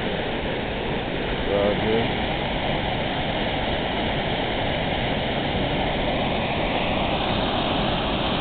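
Steady rushing noise of a waterfall, the constant sound of a large volume of falling water.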